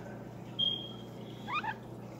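Steady low hum of an aquarium air pump and bubbler. About half a second in, a high whistled call from an unseen animal is held for about a second, then ends in a short broken chirp.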